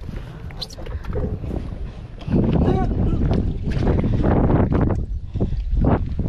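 Wind buffeting a camera microphone, loudest through the middle, over rustling and knocking from handling, with brief snatches of voices.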